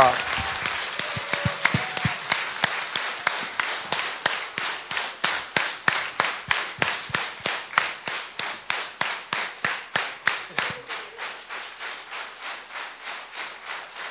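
Concert audience applauding, the clapping falling into unison as a steady rhythmic beat that slowly fades.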